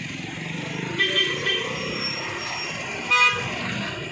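Road vehicle horns honking in street traffic: a few short high beeps about a second in, then one louder, fuller honk just after three seconds, over a steady rumble of engines.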